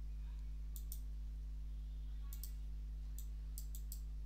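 Computer mouse clicking about eight times, some clicks in quick pairs, over a steady low electrical hum.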